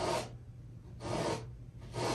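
Thick wet oil paint being scraped off a canvas in short downward strokes, two about a second apart with a third beginning at the end. The strokes clear paint away to cut out the shape of a cabin.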